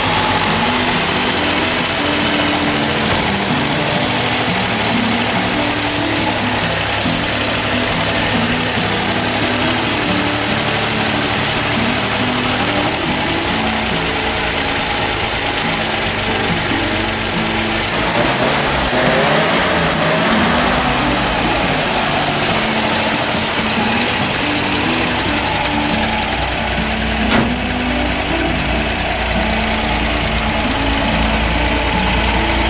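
A GMC 305 V6 running steadily just after being started, breathing through a freshly rebuilt Stromberg WW two-barrel carburetor with no air cleaner fitted. Its sound shifts briefly about eighteen seconds in, while the carburetor linkage is being worked.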